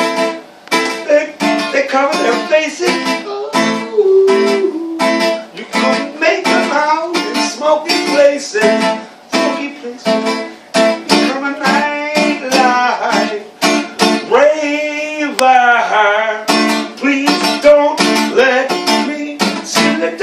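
Acoustic guitar strummed in a steady rhythm with a man singing along. A long, wavering sung note comes about three-quarters of the way through.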